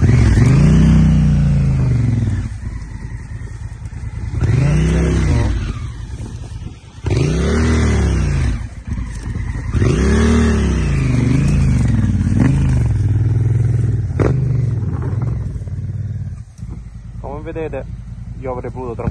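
Honda Africa Twin's parallel-twin engine revved in repeated short bursts, rising and falling about four times, then held at a steadier speed, as the rider works the stuck bike under load on a narrow trail.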